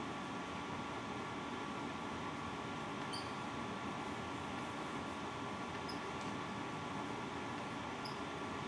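Steady room hiss and hum with a few faint, short squeaks from a marker writing on a whiteboard.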